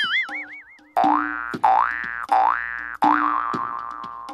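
Cartoon comedy sound effects and music added in the edit: a wobbling boing-like tone for about the first second, then a bouncy comic music cue with three quick rising swoops and a falling one near the end.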